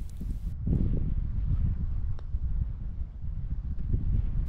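Wind buffeting the microphone, a steady low rumble, with one faint click about halfway through as the putter strikes the golf ball.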